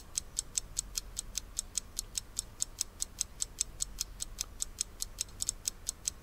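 Ticking-clock sound effect: a fast, even run of light ticks, about six a second, filling a pause.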